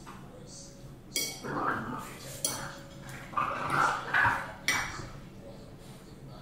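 Metal fork clinking sharply against a bowl three times: about a second in, midway, and near the end. Short vocal sounds come in between, as loud as the clinks.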